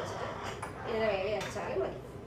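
A woman speaking, with two light clicks of a steel plate and a heavy weight being set down on a cutting board.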